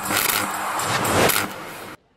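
Whooshing transition sound effect of a news intro sting, rising in two swells and cutting off suddenly just before the end.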